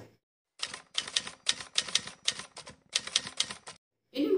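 Typewriter sound effect: a quick, uneven run of key strikes starting about half a second in, with a short pause about three-quarters of the way through, stopping just before the end.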